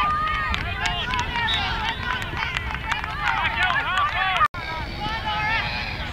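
Many overlapping voices shouting and calling over a match, with a brief break in the sound partway through.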